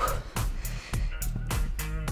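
Background music with a fast, steady beat and a bass line.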